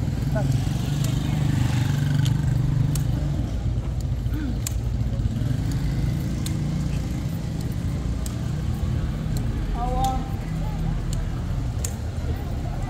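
Walking on stone paving: irregular sharp taps of footsteps and forearm crutch tips over a steady low rumble of street traffic. A voice speaks briefly about ten seconds in.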